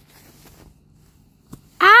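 A faint hiss and a light click, then a boy's loud cry of 'Ow!' that rises and falls in pitch and starts near the end.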